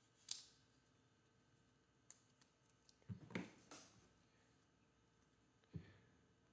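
Faint clicks and slides of Panini Certified football cards being handled and flipped through by hand: a sharp click just after the start, a cluster of card-on-card sounds around the three-second mark, and one more click near the end.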